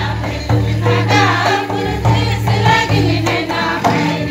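A group of voices singing together, accompanied by a two-headed barrel drum beaten in a steady pattern, with a strong low hum under the music.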